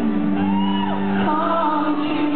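Twelve-string acoustic guitar strumming sustained chords live in a hall, with audience members whooping and shouting over it.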